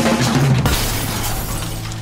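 An edited-in crash sound effect like shattering glass hits at the start, with a second hit under a second in, then fades out over a steady background music bed.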